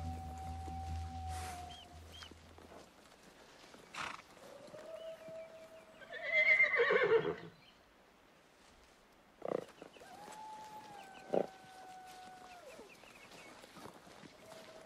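A horse whinnies once, loudly, about six seconds in, with a few sharp knocks of hooves or tack. Long, thin, held tones that slide at their ends come and go, and music fades out in the first few seconds.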